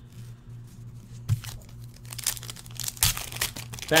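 Foil trading-card pack wrapper crinkling and tearing as a pack is ripped open and the cards are handled, in irregular crackles that start about a second in and grow busier, over a low steady hum.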